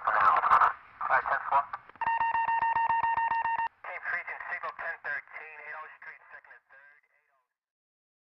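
Police two-way radio chatter, thin and crackly, with a steady electronic tone for about a second and a half in the middle. The voices fade out about seven seconds in.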